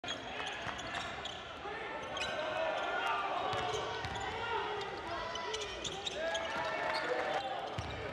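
Basketball game sound on a hardwood court: a ball dribbled in short repeated bounces, over a steady mix of players' and crowd voices in the gym.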